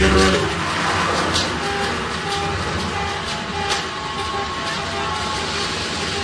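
Jungle/drum and bass DJ mix in a breakdown: a dense rushing, noisy texture with short repeated mid-pitched notes about twice a second and a few scattered sharp hits. The heavy bass drops away just after the start.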